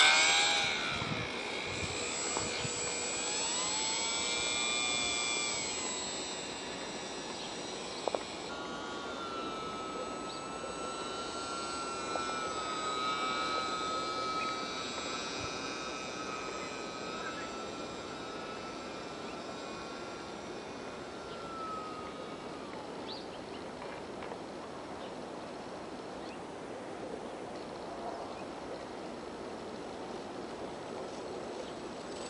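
Brushless electric motor and propeller of an E-flite UMX J-3 Cub micro RC plane in flight: a high whine, loudest as the plane passes close at the start, then rising and falling in pitch with throttle and turns, and fainter after about 22 seconds as it flies farther off.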